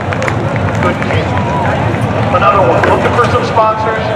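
Indistinct talk of spectators near the camera over a steady low rumble.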